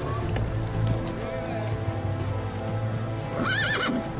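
A horse's hooves clip-clopping under background film music of sustained notes. A horse whinnies with a wavering call near the end.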